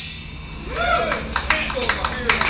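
Small club audience at the end of a punk song: a single shouted whoop, then a few scattered hand claps.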